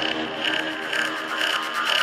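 Electronic dance music in a breakdown: the kick drum and bass are dropped out, leaving a synth line over quick, evenly repeating hi-hat-like ticks.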